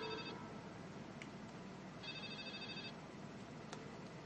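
A telephone ringing with a trilling electronic ring, faint: one ring cuts off just after the start, and a second ring of about a second comes about two seconds in.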